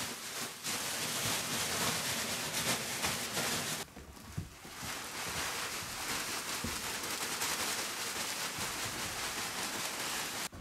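Dry wood shavings pouring out of a plastic sack onto a sheet-metal tray: a steady rustling hiss, with a short break about four seconds in.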